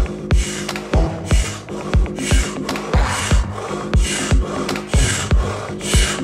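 Rapid, forceful breathing in and out through the mouth, about two breaths a second, in the quick-breathing phase of breathwork. Background music with a steady bass beat plays underneath.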